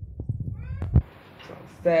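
Rustling from a phone being handled, with a knock about a second in, then a loud high-pitched cry with a bending pitch starts near the end.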